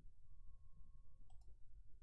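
A computer mouse button clicked once, a quick press and release about a second and a half in, over faint low background noise and a faint steady high tone.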